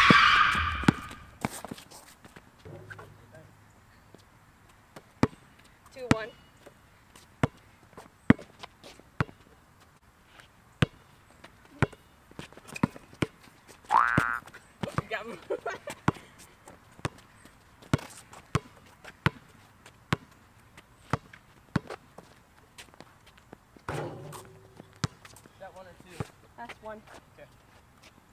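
Basketball bounced on an asphalt court, with sharp thuds at irregular spacing, roughly once a second. A brief high squeal sounds right at the start, and a rising one about halfway through.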